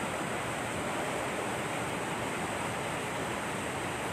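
Water pouring out of a concrete sluice gate outlet and churning in the channel below: a steady, even rushing.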